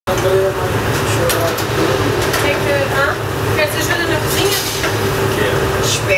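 Commercial kitchen background: a steady low mechanical hum of ventilation, with indistinct voices and scattered light clicks and clatter.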